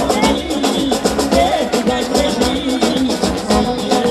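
Live Balkan brass-band music from a wedding-and-funeral orchestra: brass carrying a wavering melody over a fast, steady drumbeat.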